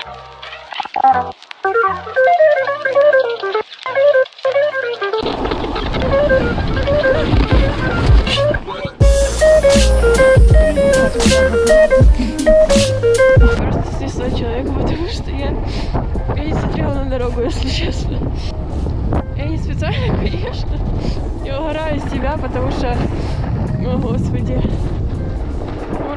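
Background music with a stepping melody, joined about five seconds in by a loud steady rush of wind on the microphone and a snowboard sliding over snow.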